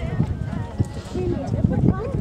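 Hoofbeats of a show-jumping horse cantering on a sand arena after clearing a fence, heard as repeated low thuds, with people talking in the background.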